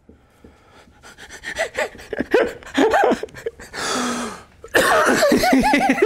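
Laughter: quiet breathy chuckling at first, then a breathy burst, and loud laughter from about five seconds in.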